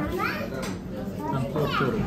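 Children's voices, high-pitched and short, over the chatter of a busy dining room.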